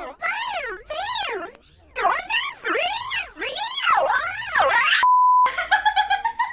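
A rapid run of shrill, high-pitched wails, each sweeping up and then down in pitch, about two a second. About five seconds in comes a short, steady beep of the kind used as a censor bleep, and music starts near the end.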